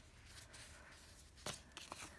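Faint rustling of a sticker sheet being handled and slid across paper, with two light clicks about one and a half seconds in.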